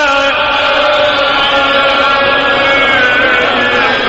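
A man's voice chanting one long held note of a Shia mourning lament (mersiye), almost level in pitch with a slight waver about three seconds in.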